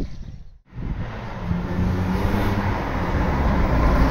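Mk2 Vauxhall Astra GTE 16v, a 2.0-litre 16-valve four-cylinder, driving along a street, its engine note and tyre noise growing louder as it approaches.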